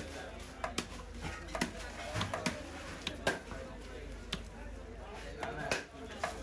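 Knife chopping pieces of wallago catfish on a wooden chopping block: a run of sharp knocks at irregular intervals as the blade hits the wood. Voices can be heard in the background.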